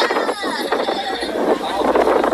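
A crowd of onlookers shouting and screaming in alarm: high-pitched cries over a dense, loud hubbub of many voices.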